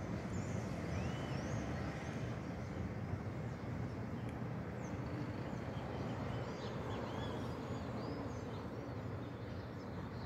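Steady distant city traffic hum, with many small birds chirping over it throughout.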